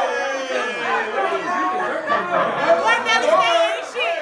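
Several people talking over one another at once: lively overlapping chatter from a group in a room.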